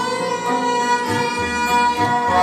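Ensemble of bowed Indian string instruments, including a peacock-shaped taus, playing held melodic notes in Raag Gauri Cheti over a low repeating bass.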